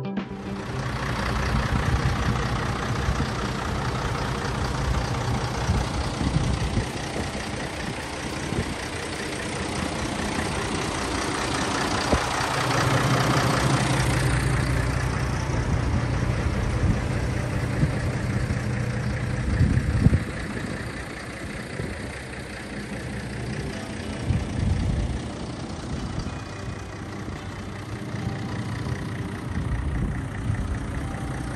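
A MAN 6x2 recovery truck's diesel engine idling steadily, with one sharp knock about two-thirds of the way through.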